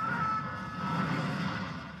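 Film sound of a crashing plane: a heavy, noisy rumbling and scraping din of wreckage, with a steady high tone that stops about a second in.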